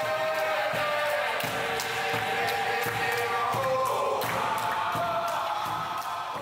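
A group of men singing a chant together in unison, with a hand drum beating time.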